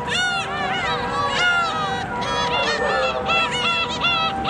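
A flock of birds calling over one another, many short rising-and-falling calls in quick succession, with a few steady held tones underneath.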